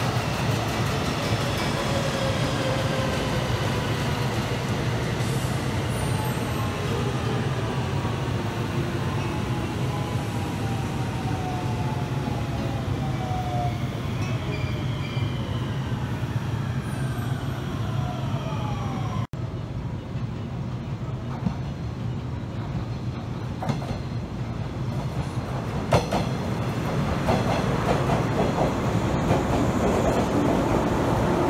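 JR West Special Rapid electric train running past at high speed, a steady rumble of wheels and motors with whining tones that slowly fall in pitch. About two-thirds of the way through this gives way to a second electric train, a green 113 series, rolling in alongside the platform, growing louder near the end, with a single sharp knock.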